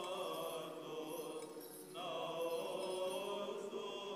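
Church singers chanting Orthodox liturgical chant in long, held notes, with several voices sounding together. The singing breaks off briefly about a second and a half in and resumes a moment later.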